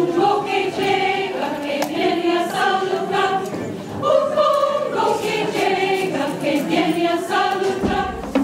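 Large mixed choir of men and women singing together in harmony, held notes moving from chord to chord, with a short dip just before the middle and a strong new entry right after it.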